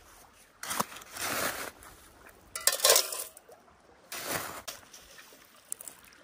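A plastic scoop digging into gritty river sand and gravel, three scoops a second or so apart, each a short scraping, crunching rush.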